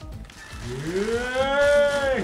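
A person's long drawn-out 'ooooh' of delight: it rises in pitch from about half a second in, is held for about a second, and starts to drop away at the very end.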